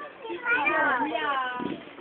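A high-pitched cry about half a second in, lasting about a second, its pitch wavering and falling.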